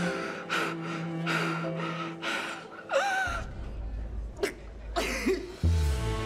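A woman crying: a run of sharp, gasping sobs, with a wavering cry about three seconds in, over slow, sad bowed-string music.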